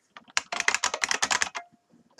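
Typing on a computer keyboard: a quick run of about a dozen keystrokes lasting about a second.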